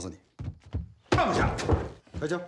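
Film dialogue: a few short knocks, then a loud voice delivering a line in the second half.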